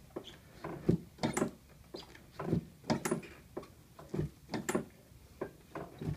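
Chiropractic adjustment of the sacrum and sacroiliac joints, hands thrusting on the pelvis of a patient lying face-down on a padded adjusting table. A string of sharp knocks and clicks, a second or so apart.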